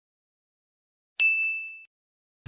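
A single bright ding sound effect about a second in: one clear high tone that starts sharply and fades out over about half a second.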